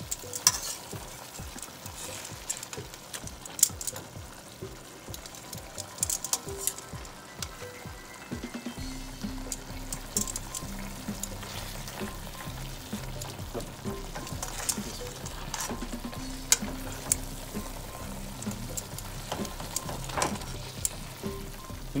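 Chicken pieces, onions and peppers sizzling as they brown in oil and sofrito in a metal pot, with sharp clicks of metal tongs against the pot as the pieces are turned.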